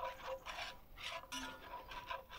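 A whisk stirring a flour-and-fat roux in a cast iron skillet: quick, even scraping strokes, about four a second. The roux is being whisked constantly as it cooks toward a light caramel colour.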